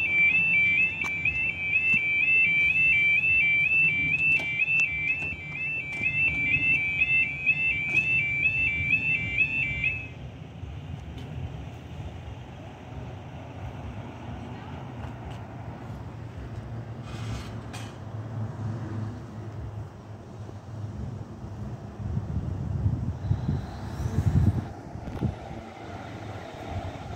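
Level crossing audible warning alarm sounding a stepped two-tone warble, about two cycles a second, which stops about ten seconds in. After it, a low rumble remains and swells near the end.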